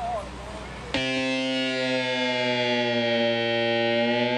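Electronic keyboard starting a long held chord suddenly about a second in, sustained steadily without a beat; a voice talks briefly just before it.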